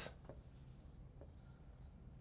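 Faint marker rubbing on a whiteboard as a small loop is drawn.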